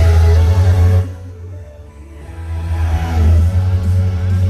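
Loud electronic dance music from a live DJ set played over a festival sound system, with heavy bass. About a second in the music cuts out suddenly, then builds back in and is at full volume again about two seconds later.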